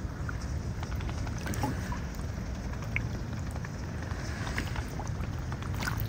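Mute swan feeding with its bill in shallow water: small splashes, drips and clicks as it dabbles for grain, over a steady low rumble.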